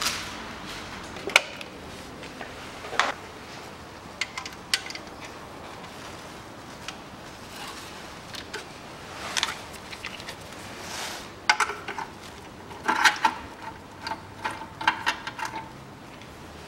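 Ratchet wrench with a 10 mm socket undoing a bolt: scattered metallic clicks and clinks of the tool, with a run of quick ratchet clicks near the end.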